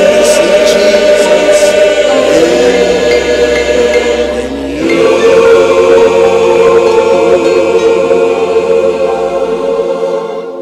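Large mixed gospel choir singing the drawn-out closing words 'in... you', holding long chords. About five seconds in the voices rise to a final chord that is held for about five seconds.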